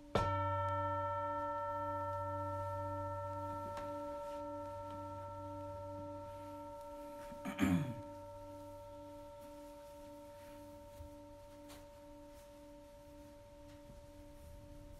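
A singing bowl struck once, ringing with several steady tones that fade slowly, its lowest tone pulsing about twice a second. A brief louder noise comes about halfway through.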